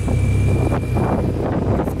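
Audi R8's V10 engine idling steadily as it warms up after a cold start.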